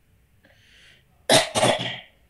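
A person coughing twice in quick succession, just after a short, faint intake of breath.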